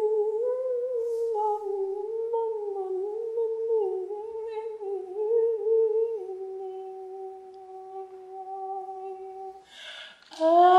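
A single voice humming one long drawn-out note that wavers gently in pitch, then settles onto a slightly lower steady pitch about six seconds in, growing fainter and stopping just before the end.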